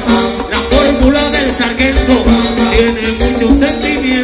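Live band playing upbeat Latin music in a salsa-reggae style, with a steady beat, through a concert sound system.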